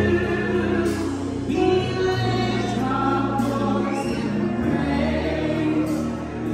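Group singing of a gospel worship song over electronic keyboard accompaniment, with held bass notes that change every second or two.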